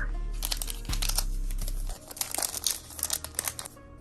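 A foil wrapper of a 2023-24 O-Pee-Chee hockey card pack being torn open and crinkled by hand, with a fast run of sharp crackles.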